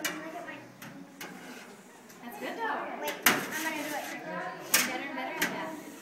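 Indistinct background talk with about five sharp metallic clacks, the wire hoops of giant-bubble wands knocking against the rim of a steel bubble table.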